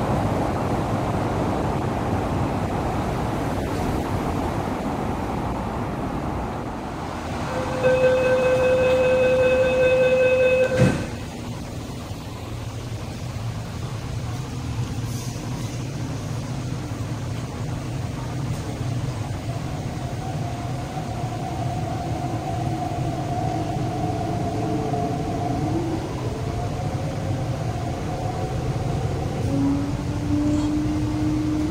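MTR East Rail Line electric train: running noise at the platform, then a loud, steady electronic warning tone lasting about three seconds that stops abruptly. After that comes a quieter hum from inside the carriage as the train pulls away, with the traction motor whine rising in pitch near the end.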